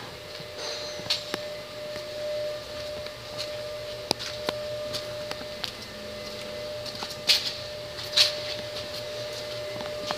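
Steady shop room hum with a constant tone, overlaid by scattered light clicks and knocks, and a couple of brief louder rustles near the end, as someone handling the camera walks around the vehicle.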